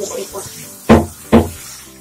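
Two loud, sharp knocks about half a second apart, struck against the hard plastic of a shower cabin.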